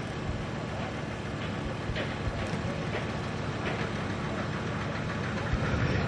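Steady low rumbling background noise with a few faint knocks.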